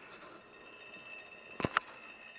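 Faint, steady high whine of a PC cooling fan running the stir plate's magnet, with two sharp clicks in quick succession about one and a half seconds in.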